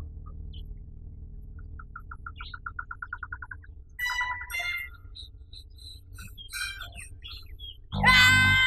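Forest birds calling: a rapid trill of about nine notes a second, growing louder, about two seconds in, then louder chirping calls around four seconds and scattered short chirps after, over a steady low hum.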